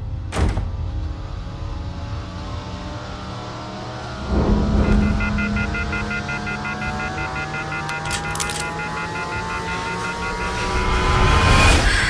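Trailer score and sound design: a sharp hit, then a heavy low hit a few seconds in, followed by a slowly rising tone with stuttering high pulses that builds to a crescendo and cuts off suddenly at the end.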